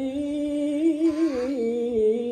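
A man's voice in melodic Qur'an recitation (tilawah), drawing out one long unbroken note with a wavering ornament about a second in, then settling on a lower pitch.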